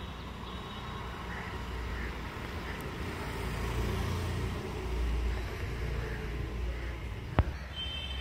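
Steady low rumble of distant road traffic, with one sharp click a little past seven seconds in.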